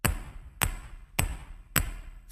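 Four evenly spaced sharp percussive clicks with a short metallic ring, a little over half a second apart: a steady count-in click before a play-along rhythm track.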